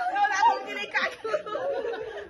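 Several people talking over one another in a room: indistinct group chatter.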